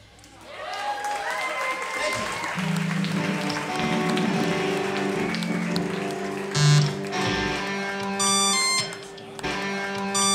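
Live indie rock band in a quiet passage: after a brief lull, sustained keyboard and electric guitar tones swell in and hold at several pitches, with a run of high, evenly spaced electronic beeps near the end.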